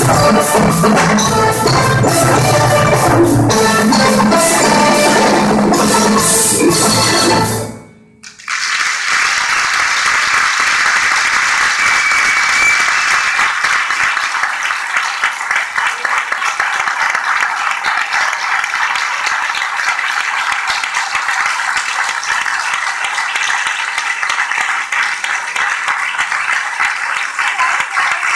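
Percussion ensemble of marimbas, vibraphones and drums with brass playing the last bars of a piece, which stops sharply about eight seconds in. After a brief gap, steady audience applause follows for the rest.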